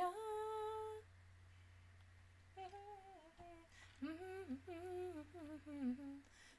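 A woman softly humming a tune with her mouth closed. There is one held note at the start, a pause of about a second and a half, then short melodic phrases that rise and fall.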